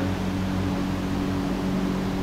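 Steady room noise: a constant low hum with an even hiss, like a running fan or air-conditioning unit.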